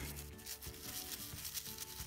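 Soft background music with long held notes, under faint brushing of a toothbrush against a small plastic part.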